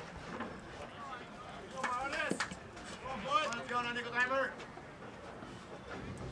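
Distant voices calling out across a baseball field in two short bursts of shouting, over faint outdoor background noise.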